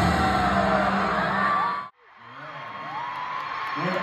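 Live pop concert in a stadium, with amplified music and vocals over a screaming crowd, cut off abruptly near the middle. After the cut a stadium crowd is cheering and screaming, growing louder.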